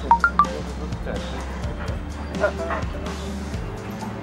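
Background music with a steady low bass, under faint voices, with three short high-pitched yelps right at the start.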